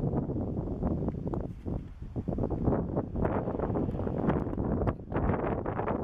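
Wind buffeting the camera microphone: a low, noisy rumble that swells and drops in irregular gusts.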